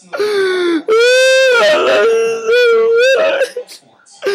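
A young man's exaggerated mock crying: a short falling wail, then several long, drawn-out wails held on one pitch, with a laugh breaking in about halfway through.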